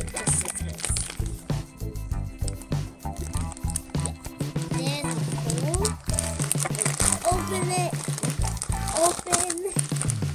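Crinkling and rustling of a clear plastic toy bag being pulled and torn open by hand, over background music.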